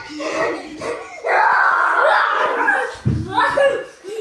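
Children's voices yelling during rough play, with a long, loud, high shriek from about a second in and another shorter cry near the end.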